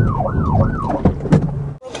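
Police car siren in yelp mode, rising and falling quickly about three times a second over engine and road noise from the moving patrol car. It cuts off suddenly near the end.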